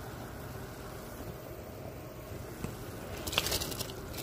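Water at a rolling boil in a metal pot, a steady bubbling. Near the end a brief, louder splashing hiss as soaked rice is poured into the boiling water.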